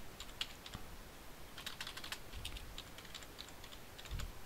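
Computer keyboard keys tapped in a short, irregular run of faint keystrokes as a decimal number is typed in.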